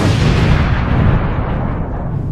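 Explosion sound effect: a sudden loud blast after a moment of silence, its hiss dying away over a second or so while a low rumble carries on.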